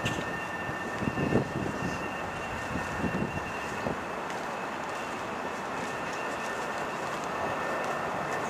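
Steady outdoor city background noise, an even rushing hiss with a faint constant high whine running through it.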